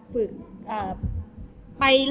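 A woman speaking Thai in short phrases, with a few low thuds about a second in and a faint steady hum underneath.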